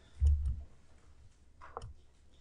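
A short low thump, then a couple of faint sharp clicks near the end.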